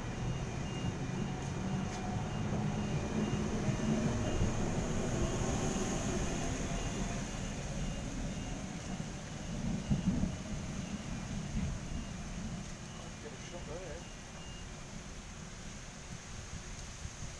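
Sydney Trains S-set double-deck electric train pulling away from the platform, its low rumble fading as it draws off down the line, with steady heavy rain.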